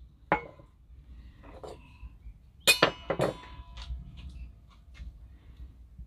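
Stainless steel dog bowl being handled on a wooden cigar box: a light knock, then two sharp metallic clinks about half a second apart near the middle, followed by a brief ringing tone.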